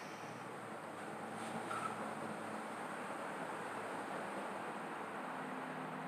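Faint, steady outdoor background noise with a low, even hum and no distinct events.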